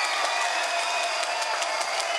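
Large concert audience clapping and cheering steadily between encores, calling the band back for a second encore.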